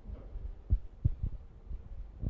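Handling noise from a handheld microphone: three dull low thumps close together over a low rumble.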